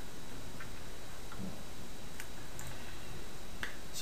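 Steady low hiss of room noise with a few faint, sharp clicks scattered through it.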